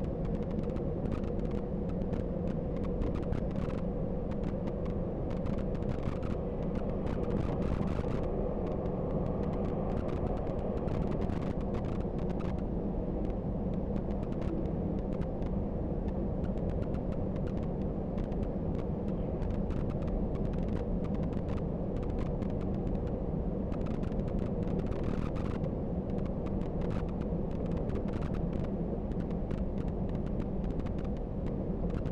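Bus cruising at motorway speed, heard from inside the cabin: a steady low engine drone and tyre-on-road rumble, with many small clicks and rattles throughout.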